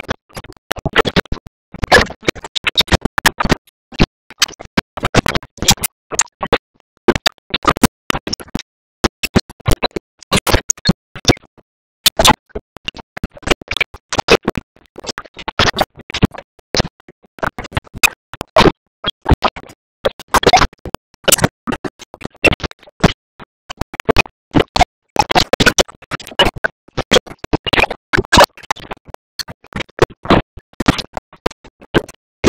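Heavily garbled, chopped-up audio: short loud fragments cut off abruptly several times a second with gaps between, giving a stuttering, scratch-like sound in which no words can be made out.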